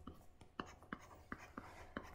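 Faint, light taps and clicks of a stylus on a pen tablet while handwriting, about six short ticks spread through the moment.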